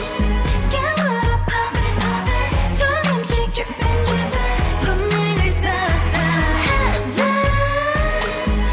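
K-pop girl-group dance song: female vocals over a pulsing bass-heavy beat.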